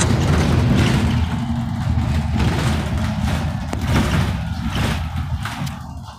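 Cummins ISL diesel engine of a 2008 Van Hool A300L transit bus running while the bus is under way, heard from on board as a deep, steady rumble. It drops in level near the end.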